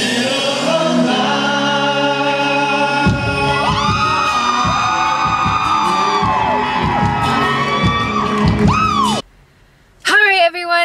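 A man singing long, gliding notes into a handheld microphone over amplified music. The music cuts off abruptly about nine seconds in.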